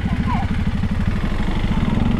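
KTM 390 Adventure's single-cylinder engine running at low revs with a steady, even beat as the motorcycle moves off slowly.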